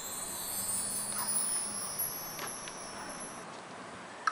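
High chime-like ringing, several thin shimmering tones that fade out about three and a half seconds in, with a few faint light clicks.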